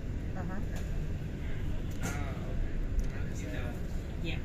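Steady low rumble of a London double-decker bus in motion, heard from inside the upper deck. Indistinct passenger voices talk over it, loudest about two seconds in.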